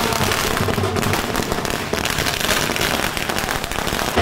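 Firecrackers going off on a street, a rapid, continuous crackle of many small bangs.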